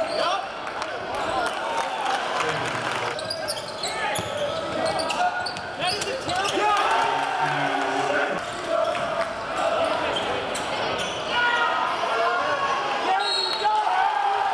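Live basketball game in a gym: a basketball bouncing on the hardwood court amid crowd voices and shouts, echoing in the large hall.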